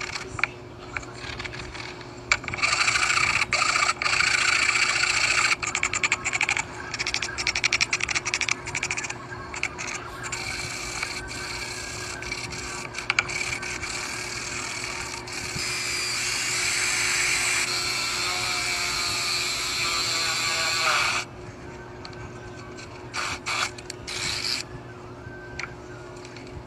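A wooden workpiece rubbed back and forth on a sheet of sandpaper laid flat on a bench, a rasping scrape. The strokes come fast and then run together into a steady scrape for several seconds, stop about five seconds before the end, and are followed by a few short scrapes.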